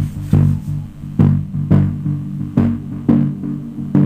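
Small unbranded woofer playing bass-heavy electronic music at high volume, with deep bass notes hitting about twice a second.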